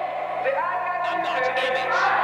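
Voices with music behind them, over a steady low electrical hum.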